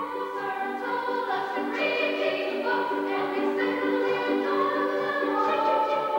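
A stage chorus of voices singing together in parts, holding long notes that step from pitch to pitch.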